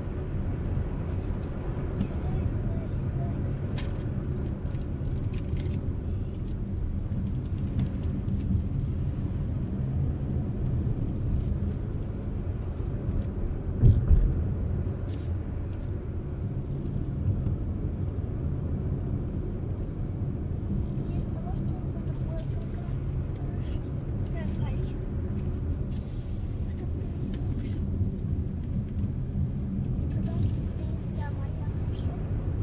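Steady low rumble of a car's engine and tyres on the road, heard from inside the cabin while driving, with a single thump about halfway through.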